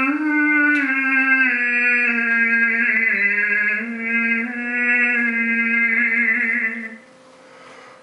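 A man's overtone singing: one long held drone note with high overtones shifting above it, the note stepping down slightly in pitch about three seconds in. The note stops about a second before the end, and the next one starts just after.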